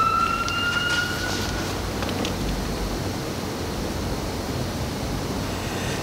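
Emergency vehicle siren, its single tone rising slowly and fading out about a second and a half in, followed by steady low room noise.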